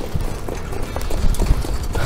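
Hoofbeats of a Standardbred harness horse pulling a sulky along a dirt racetrack, a run of short knocks over a steady low rumble.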